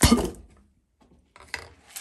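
A clear plastic tube packed with wet frog-leg sausage meat fired with one sharp hit, a single thump that dies away within half a second as the meat shoots out and lands. A few fainter knocks follow about a second and a half in.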